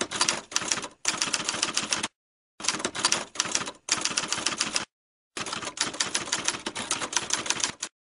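Typewriter keys clacking in quick runs of strokes, broken by two brief pauses.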